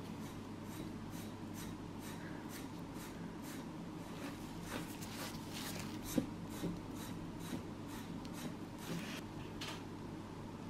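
Steel nail nippers cutting and scraping away a thickened, fungus-infected toenail: a run of small clicks and crunches that come more often in the second half, with one sharp snip about six seconds in. A steady low hum runs underneath.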